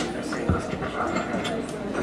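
Faint voices over room noise, with a single thump about half a second in.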